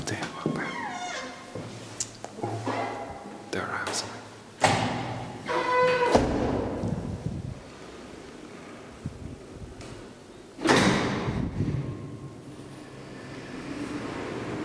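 The doors of an old ASEA elevator being handled: the hinged landing door and the cab's twin doors opening and shutting. There are two loud thuds, about a third of the way in and again about three-quarters of the way in, with some squeaking in between.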